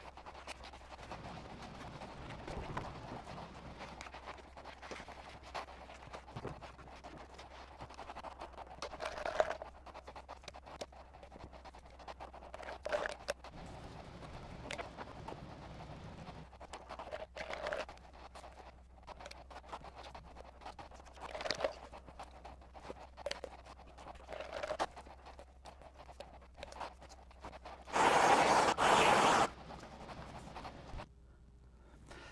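Epoxy being spread over the fiberglassed wooden deck of a strip-built kayak: faint scratchy scraping of the applicator on the hull, with a louder stroke every few seconds. Near the end comes a loud, rough rustle lasting about a second and a half.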